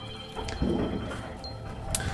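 Water splashing and lapping around an inflatable boat being paddled through flooded mine tunnel water, with a few light clicks and knocks.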